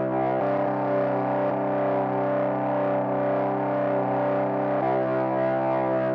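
Generative synthesizer music from a small patched rig of Korg Volca Modular, Korg Volca Keys and Cre8audio East Beast: a sustained, distorted drone of stacked steady tones. One layer moves to a new pitch about half a second in and returns near the five-second mark.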